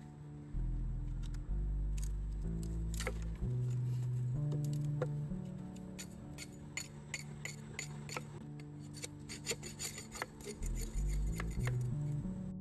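A small camping axe shaving thin kindling strips off a split piece of firewood: a run of quick, sharp scraping strokes, thickest in the second half and stopping shortly before the end. Background music plays throughout.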